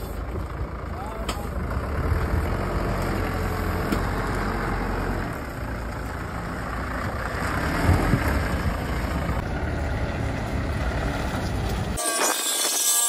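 Toyota forklift's engine running steadily, with a few short knocks, the loudest about eight seconds in.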